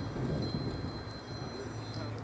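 Low background noise between spoken phrases: a steady low hum and a thin, steady high-pitched whine over a soft hiss.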